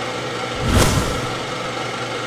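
Programme ident sound design: a whoosh that swells and fades about a second in, over a steady droning bed that starts abruptly as the previous music cuts out.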